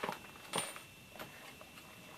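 Three faint clicks and taps within about the first second as hands handle a traveler's notebook stuffed with inserts and elastic bindings.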